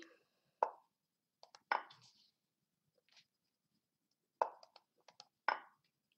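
Lichess's wooden move and capture sounds, short sharp clacks several times in small groups as chess moves are played on screen, with mouse clicks among them.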